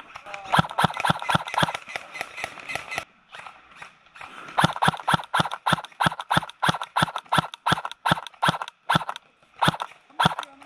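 Airsoft gun firing rapid single shots, about four a second, in two strings separated by a pause of about two seconds.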